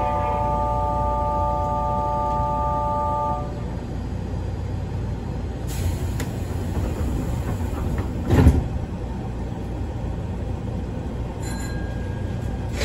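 A Nankai 1000 series electric train standing at a station platform, heard from the driver's cab: a steady electronic chord of several tones cuts off about three and a half seconds in, leaving the train's low steady hum. About eight seconds in comes one loud thump.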